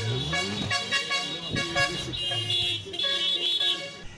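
Car horns honking over music, the honking strongest in the second half.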